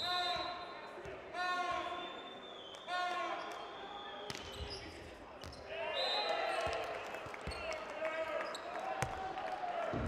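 Volleyball hall sound: voices from the stands call out three times, about a second and a half apart, then hold a longer chant over the second half. A few sharp single thuds of a volleyball being bounced or struck come in between, in a large echoing hall.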